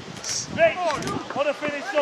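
Several men's voices shouting and calling out across a football pitch, overlapping calls of congratulation after a goal, starting about half a second in.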